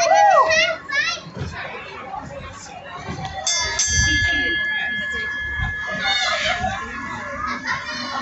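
Children's voices, then a hanging station bell rung once about three and a half seconds in. Its clear ringing tone fades slowly over several seconds.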